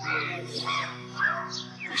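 Film score: soft background music of sustained low chords, shifting to a new chord about a second in, with birds chirping over it.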